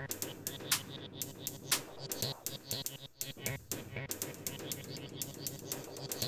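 Live-programmed acid-style techno from a Korg Electribe 2 Sampler and Novation Bass Station II synthesizer: a stretch without kick drum, crisp percussion ticks a few times a second over a held low synth tone.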